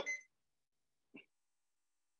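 Near silence, with one brief faint blip about a second in.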